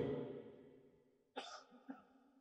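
The echo of an amplified voice dies away, then a short, faint cough comes about a second and a half in, with a smaller one just before the end.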